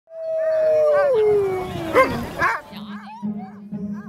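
Sled dogs howling and yelping: one long howl sliding down in pitch, then a string of short yelps. A low steady drone comes in about three seconds in.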